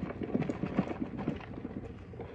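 Crumbled feta being shaken out of a plastic tub onto a bowl of food: a run of light, irregular taps and rattles as the container is jiggled and the crumbles fall.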